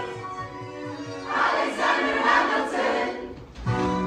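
Large mixed choir of men and women singing together, softer at first and swelling after about a second, with a final strong accented chord near the end.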